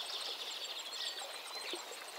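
Nature ambience recording: small birds chirping over a high, evenly pulsing insect call and a soft hiss.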